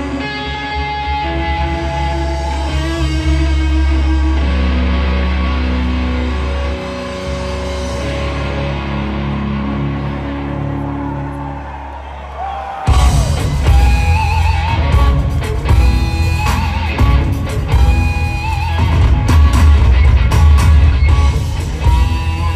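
Live rock band playing a song intro: held chords over a steady low bass drone, then about thirteen seconds in the drums and electric guitar come in with the full band, much louder.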